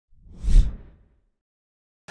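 A single whoosh sound effect for a video intro, swelling to a peak about half a second in and fading out within a second, with a deep rumble under a hiss.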